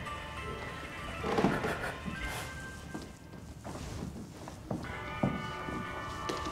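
Game music from a mobile phone: thin, steady electronic tones, with a few soft knocks.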